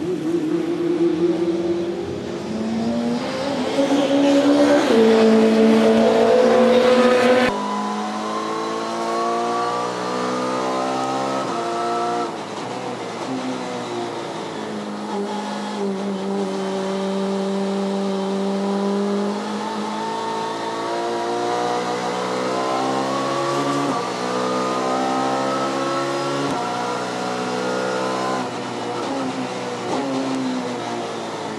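BMW 320si touring car's four-cylinder racing engine at speed on a wet track. For the first few seconds it is heard from trackside with a loud hiss of tyre spray as the car passes. Then it is heard from inside the cockpit, its pitch climbing in steps through repeated upshifts, holding steady for a few seconds, dropping on a downshift, then climbing through the gears again.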